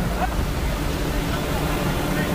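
Steady low rumble of ship machinery running on deck at sea, with a faint steady hum over it, along with the wash of wind and sea.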